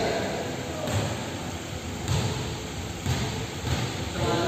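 Steady background noise of a large indoor gym hall with a few dull low thumps, roughly a second apart.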